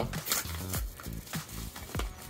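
A kraft padded mailer being torn open by hand: a short paper rip early on, then lighter crinkling of the paper, over quiet background music.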